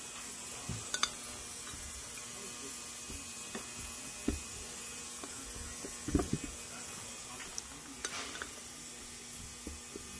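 Light, scattered clicks and knocks of hands and tools handling the outboard's metal parts, over a steady hiss and faint hum. The loudest is a dull thump about six seconds in.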